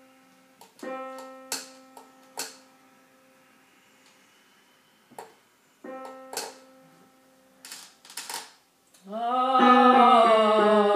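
A piano sounds a single note around middle C, struck about a second in and again about six seconds in, and each time it rings and fades. A few brief sharp noises fall in between. About a second before the end a voice comes in, sliding in pitch on a sung vowel and growing loud.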